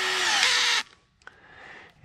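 Cordless drill/driver running steadily as it drives the clamp screw on a flexible rubber pipe coupling. Its pitch drops just before it stops, a little under a second in.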